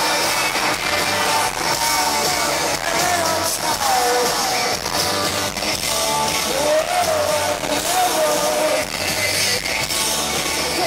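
Live rock band playing loudly, with a male voice singing over electric guitars, drums and cymbals.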